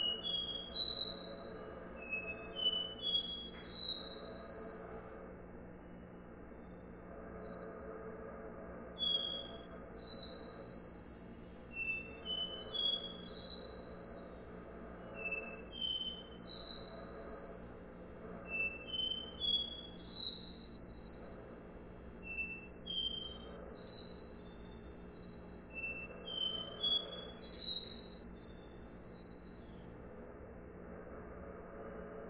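Caboclinho (capped seedeater, Sporophila bouvreuil) singing its 'dó ré mi' song: phrases of short, clear whistled notes that climb in steps. After the first phrase comes a pause of about four seconds, then phrase follows phrase almost without a break. A steady low hum runs underneath.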